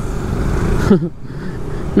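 Road noise from riding a scooter in traffic: a rush of wind and engine noise that builds for about a second and then cuts off suddenly, followed by a quieter low engine rumble.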